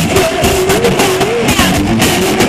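Live heavy metal band playing loudly, with distorted electric guitar over drums and a wavering held note.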